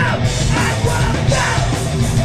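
Crossover thrash metal band playing live: distorted electric guitar, bass guitar and drums at full volume, with shouted vocals over the top.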